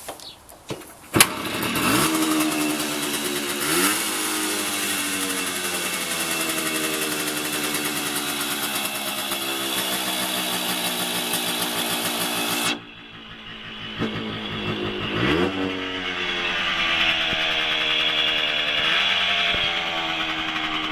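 1965 Flandria Concorde 5 hp motorcycle engine being started: a sharp click about a second in, then it catches and is blipped up twice before settling into steady running. Near two-thirds of the way through it falls away sharply, then picks up again with another rev and runs on.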